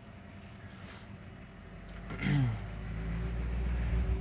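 The 352 cubic-inch V8 of a 1958 Ford Fairlane 500, heard from inside the cabin, idling quietly and then pulling away. Its low rumble builds over the second half as the car starts moving.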